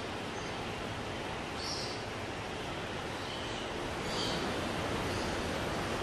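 Steady hiss of indoor ambient noise with a few short, high bird chirps, one every second or two.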